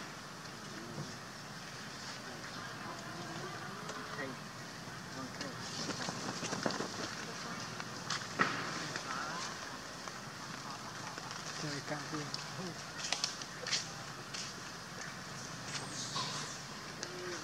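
Outdoor ambience of faint, distant people talking, with scattered crackles and rustles and one sharp click about eight seconds in.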